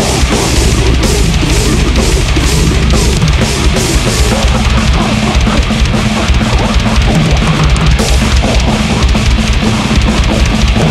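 A goregrind band playing live through a festival PA: fast, dense drums with crashing cymbals, down-tuned bass and guitar, steady and loud throughout.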